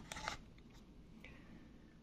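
A few faint clicks and rustles of a plastic orchid pot and its leaves being handled in the first half-second, then near-quiet room tone.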